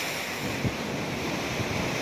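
Rough sea surging and breaking on the rocks of a seawall, with wind buffeting the microphone in low gusts, strongest about two-thirds of a second in and again near the end.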